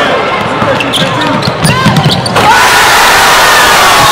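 Basketball being dribbled on a hardwood gym floor, with players' voices around it. About two and a half seconds in, a loud, dense crowd-like wash takes over.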